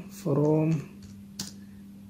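Computer keyboard keystrokes as a word is typed, with one sharp key click about one and a half seconds in, over a faint steady hum.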